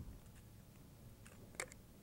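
Near silence with a few faint clicks and light handling noise as hands turn over a small foam airplane tail piece; the clearest click comes about one and a half seconds in.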